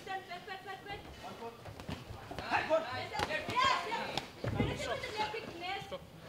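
Men's voices shouting and calling over one another, with a few sharp knocks between about two and a half and four and a half seconds in.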